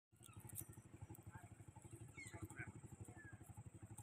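Faint, steady puttering of a small engine running, a rapid even pulse, with a few faint high chirps over it.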